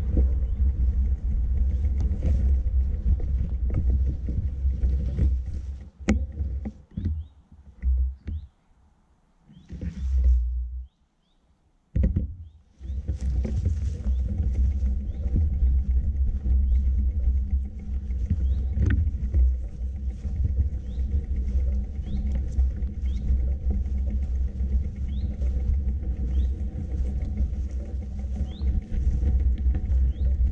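Wind buffeting the camera microphone as a deep, uneven rumble. It falls away in lulls between about six and thirteen seconds in, nearly to silence twice, then comes back steady.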